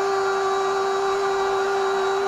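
A football commentator's long held goal cry, a single steady high note sustained without a break.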